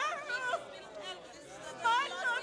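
Church congregation crying out in ecstatic praise: a woman's high voice wails with a quavering pitch in the first half-second, and another cry starts near the end, over the chatter of other voices.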